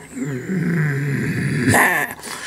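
A man's voice making a mock demonic growl: a low drawn-out growl falling in pitch, breaking into a harsh, hissing snarl near the end.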